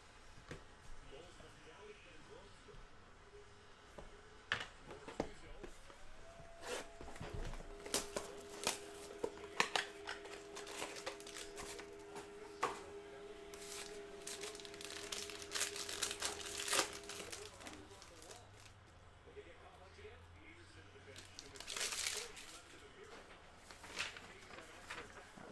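Foil trading-card packs being torn open and crinkled, in scattered bursts of crinkling and tearing, with cards shuffled in hand. A steady hum runs through the middle stretch.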